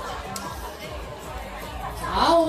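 Indistinct chatter of a seated crowd, a low murmur of many voices with no single speaker standing out.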